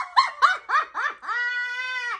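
Women's high-pitched laughter: a quick run of about five short yelping laughs, then one long high squeal held for most of a second near the end.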